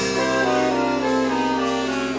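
A saxophone ensemble with electric bass and rhythm section playing jazz-style music. The saxophones hold a chord over a sustained low bass note, with a sharp hit right at the start.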